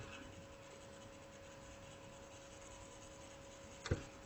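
Faint scratching of a pen stylus writing on a tablet, over a low steady hum, with a single short click near the end.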